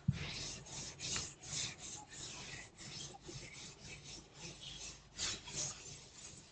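Chalkboard being wiped with a duster: repeated scrubbing strokes across the board, two or three a second, opened by a sharp knock as the duster first meets the board.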